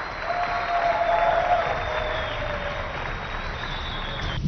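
Audience applause, swelling over the first second and then holding steady.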